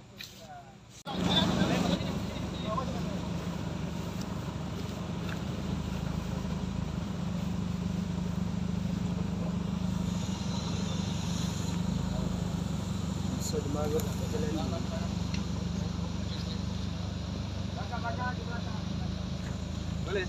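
A steady low engine rumble, like a vehicle running close by, that starts abruptly about a second in and holds even. Faint voices can be heard behind it.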